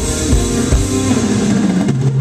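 Live jazz-funk band playing: electric bass, keyboards and electric guitar over a drum kit.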